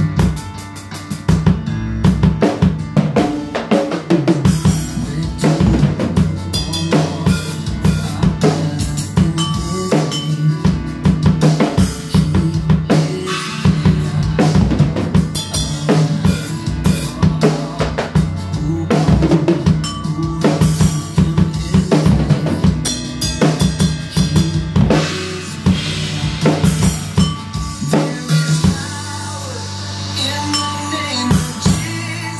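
Acoustic drum kit played live along to a recorded song: bass drum, snare and cymbals in a steady beat over the track's music. The drumming starts about a second and a half in and drops away near the end.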